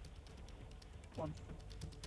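Faint light clicking taps over a steady low rumble, heard through a remote guest's earphone microphone inside a car, with one short voice sound a little over a second in.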